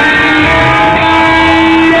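Electric guitar played loud through an amplifier, with a single note held and sustained through the second half.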